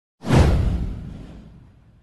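A whoosh sound effect for an animated logo intro. It starts suddenly about a quarter second in and sweeps downward, with a deep rumble underneath that fades away over about a second and a half.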